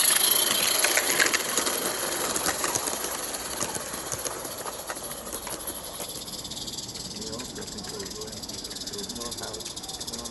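A small live-steam garden-railway locomotive and its train passing and drawing away. The steam hiss fades as the coach wheels click and rattle over the track, and both grow fainter toward the end.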